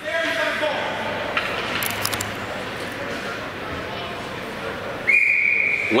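An ice hockey referee's whistle: one steady, shrill blast of about a second near the end, over the low murmur of the rink.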